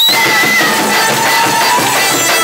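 A small acoustic band playing live: violin and a woodwind such as a clarinet carry long held melody notes over the accompaniment.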